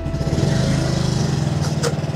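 Small two-wheeler engine running with an even, fast pulse, and a short click near the end.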